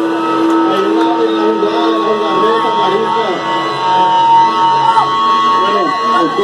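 A man's voice talking and shouting through a PA microphone over sustained, steady amplifier tones from the band's rig, with no drumming.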